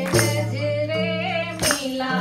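Women singing together into microphones over steady held chords, with two sharp hand claps about a second and a half apart.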